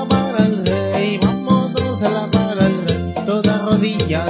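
Korg iX300 arranger keyboard playing an upbeat song: a melody line over a bass part and a steady programmed drum beat.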